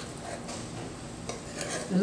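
A metal spoon stirring boiled potatoes and peas in green masala paste in a steel pot, scraping softly, over a steady low sizzle as they fry on a low flame.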